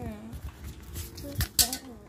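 Quiet, indistinct voices with two sharp knocks close together about one and a half seconds in.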